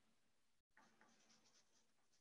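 Near silence: faint room tone over a video-call line, which cuts out completely for a moment about a third of the way in.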